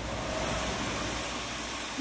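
Street-cleaning machinery running steadily: a low engine hum under an even hiss, with a faint thin whine about half a second in.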